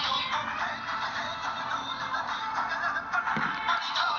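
A song playing from the Samsung Galaxy Player 5.0's built-in speaker, thin with little bass.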